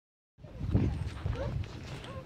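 A person's voice, starting about a third of a second in.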